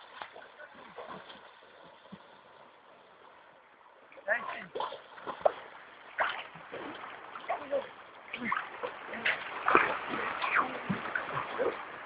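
Water splashing and sloshing from dogs swimming, starting about four seconds in as a run of irregular splashes.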